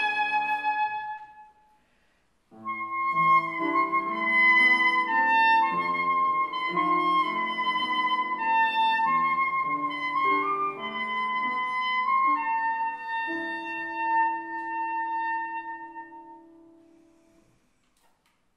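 Soprano saxophone and grand piano playing classical music. A phrase dies away in the first second or so, then after a short silence a new phrase begins and closes on a long held note that fades out near the end.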